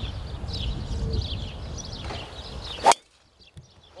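A driver striking a golf ball off the tee: one sharp, loud crack near the end, over a steady rumble of wind on the microphone that drops away abruptly just after the strike.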